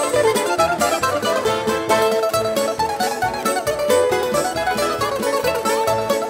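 A Greek string ensemble plays rebetiko: bouzoukis pick a quick melodic line over strummed acoustic guitar and double bass.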